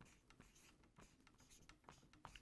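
Felt-tip marker writing on a paper flip-chart pad: a faint run of short, irregular strokes as a word is lettered.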